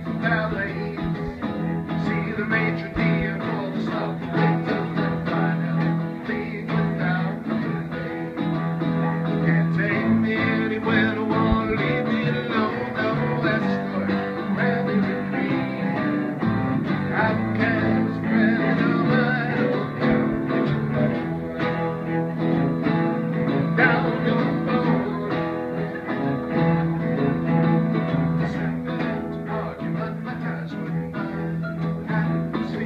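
Live acoustic trio playing a slow original song: acoustic guitar, bowed cello and electric keyboard together, with the cello's sustained low notes prominent.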